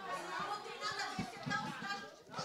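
Indistinct murmur of several voices talking off-microphone in a large hall, fainter than the speech at the microphones.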